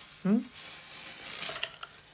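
Soft rustling and crinkling of a crocheted bag stuffed with paper towel being turned over in the hands, with a few faint ticks near the end.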